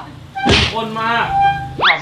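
A man's voice with a dull thunk about half a second in and a quick rising whistle-like glide near the end, in the manner of comic sound effects.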